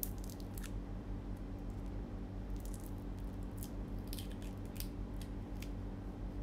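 A steady low hum in a small room, with a few faint, sharp clicks scattered through it.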